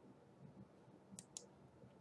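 Near silence with two faint, quick computer-mouse clicks a little over a second in, about a fifth of a second apart.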